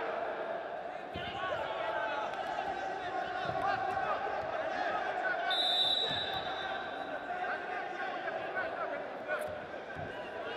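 Wrestling shoes squeaking on the mat in short chirps as two wrestlers grapple, over the noise of voices in a large hall. A short high tone sounds a little past halfway.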